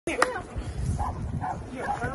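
A dog giving a few short, high whines, after a sharp click just at the start.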